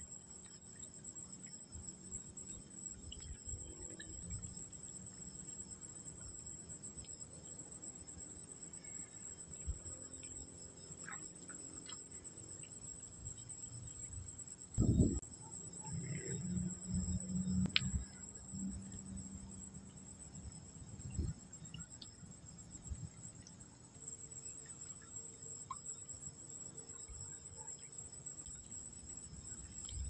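Crickets chirring steadily at night in a continuous high-pitched chorus. A few low thumps and a brief low hum break in around the middle.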